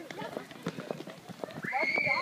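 Footsteps of several people hurrying over a brick path, a quick irregular patter of shoe clicks, with faint voices. Near the end a long high-pitched cry begins, gliding slowly downward.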